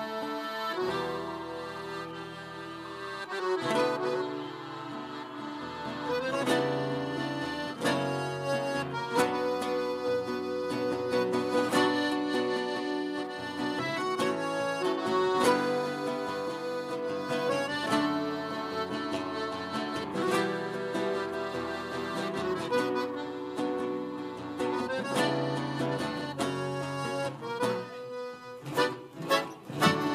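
Accordion-led folk music with guitar, a steady beat and melody notes changing every second or so. Near the end a quick run of sharp strikes joins in.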